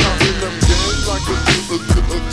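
Chopped-and-screwed hip hop: a slowed-down, slow beat of heavy kick drum hits and deep bass under sliding melodic lines.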